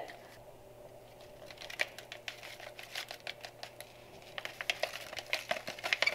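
A pepper sauce-mix packet crinkling as it is handled and shaken out over a stainless steel saucepan, a run of small irregular crackles that grows busier near the end.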